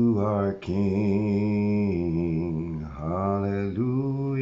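A man singing a slow worship melody in long, held notes, the pitch wavering gently, with short breaks between phrases about half a second in and again near the end.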